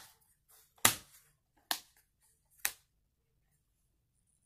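Three sharp clicks about a second apart from a hand handling a plastic DVD case.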